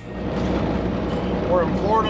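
Steady engine and road noise inside a semi truck's cab at highway speed. It rises in about a third of a second in as intro music ends, and a man's voice starts near the end.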